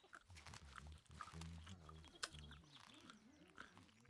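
Faint, low vocal sounds from a flock of cartoon sheep, with a few soft clicks.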